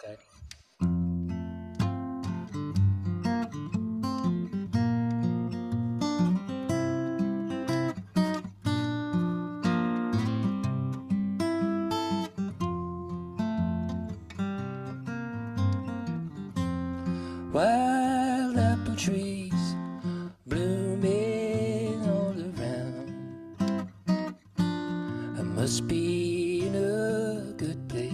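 Solo acoustic guitar playing a song's opening, starting about a second in. A man's voice comes in singing over it about two-thirds of the way through, in a few held, wavering phrases.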